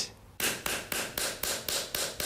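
A bamboo stick beating rapidly on the bare skin of a shoulder, about five or six light strikes a second in an even rhythm, starting about half a second in.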